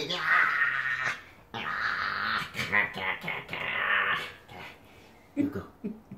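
Small white dog play-growling in three breathy bursts, each about a second long, while being tickled on its back in rough play, with a short vocal sound near the end.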